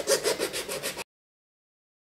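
Hand file rasping quickly back and forth on a tap shoe's sole, about six or seven strokes a second, smoothing down the screw holes left after the metal tap was taken off. The sound cuts off abruptly about a second in.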